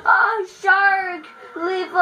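A child singing in a high voice: about three short phrases of held, wavering notes with gaps between them.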